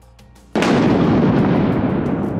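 Faint background music, then about half a second in a sudden loud boom that rumbles on and slowly fades: a dramatic impact sound effect.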